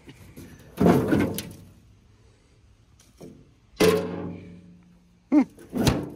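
Sheet metal of an old pickup's bed and tailgate being knocked three times, each sharp thunk followed by a short metallic ring that fades.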